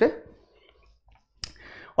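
One sharp click about a second and a half in, during a pause between a man's spoken phrases.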